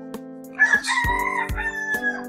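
A rooster crowing once, a call of about a second and a half, over steady background music.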